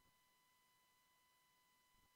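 Near silence, with only a faint steady high tone.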